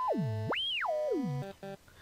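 Native Instruments Massive software synthesizer sounding a held note while its filter is swept. A bright resonant peak drops low, climbs high and falls back down over about a second and a half. Two short blips follow near the end.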